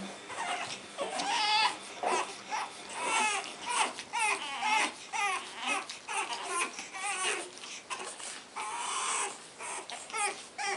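Pug puppies whining in a string of short, high-pitched, wavering cries.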